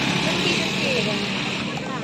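Steady rushing outdoor noise with faint voices in the background.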